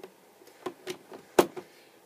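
A few light clicks and taps, with one sharper knock about one and a half seconds in.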